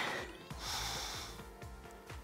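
A deep breath drawn in through the nose, lasting about a second, over faint background music.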